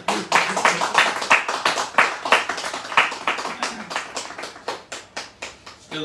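Audience applause, a patter of hand claps that thins out and fades over a few seconds.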